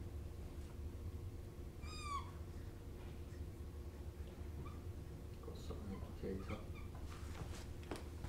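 A dry-erase marker squeaks once on the whiteboard about two seconds in, a short high squeak that bends in pitch. Faint marker strokes follow, over a steady low room hum.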